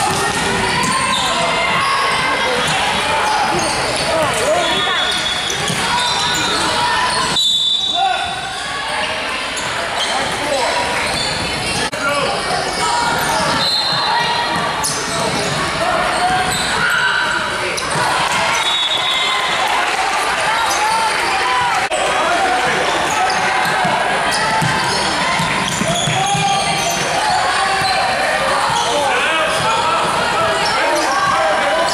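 A basketball being dribbled on a hardwood gym floor during a game, mixed with players and spectators calling out indistinctly, echoing in a large gym hall.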